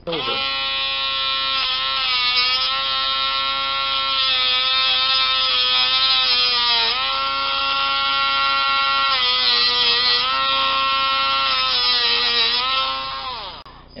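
Handheld rotary tool with a cutting wheel running at high speed, cutting a gate into a small lock pin clamped in a vise. A steady high whine whose pitch dips a few times, first about halfway through, then falls away as the tool winds down near the end.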